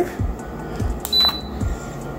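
Lasko ceramic tower heater giving one short high beep about a second in, acknowledging a remote button press that switches on oscillation, over the steady blow of its fan running on high. A few soft low thumps are also heard.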